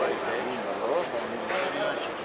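Men's voices talking quietly in the background, with a steady outdoor hiss.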